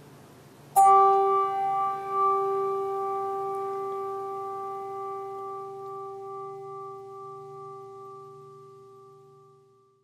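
A bell struck once about a second in, ringing with a few clear tones that fade slowly over about nine seconds. It is tolled in memory of a departed church member, right after their name is read.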